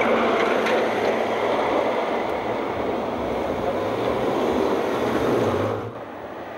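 Street traffic: cars and a truck passing on the road, a steady rush of tyre and engine noise.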